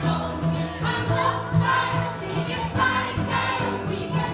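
Swedish folk music performed by a group, a tune with several pitched parts and a steady rhythmic pulse.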